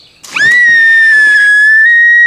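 A loud, high whistle that sweeps up quickly about a third of a second in and then holds one steady pitch, with the splash of a jumper entering a swimming pool at its start.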